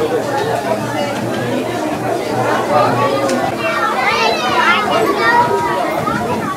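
Children's voices talking and calling out over one another, with one high-pitched child's voice rising about four seconds in.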